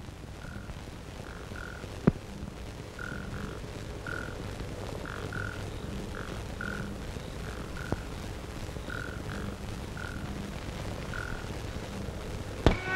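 Frogs croaking in a night ambience: short calls of the same pitch, often in pairs, repeating irregularly over a faint background hum. A sharp click comes about two seconds in and a fainter one about eight seconds in.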